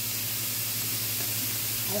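Cubes of beef sizzling steadily as they brown in a skillet on the stove.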